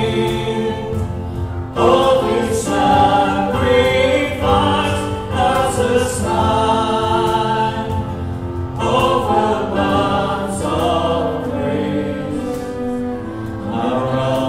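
A congregation and worship band singing a communion hymn together, with the band playing along: steady sung lines held over several seconds.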